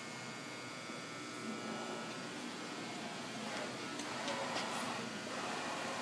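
Fryer MB-11 CNC bed mill jogging its Y axis: the servo motor and ball screw drive the saddle and table along the box ways with a faint, steady machine whine over shop hum, growing slightly louder.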